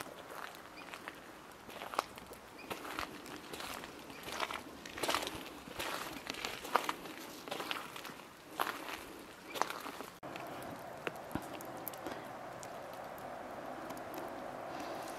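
Soft, irregular footsteps and crunches on a forest trail, one or two a second. About ten seconds in the sound changes abruptly to a steady hiss with a few scattered clicks.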